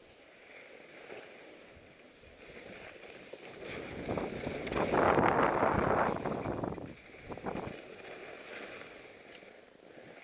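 Skis scraping and chattering over hard, bumpy snow, rising to a loud stretch about four to seven seconds in as the skier turns, over wind noise on the microphone.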